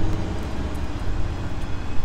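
Steady low rumble of nearby road traffic and idling cars, with faint chewing of a bite of pizza.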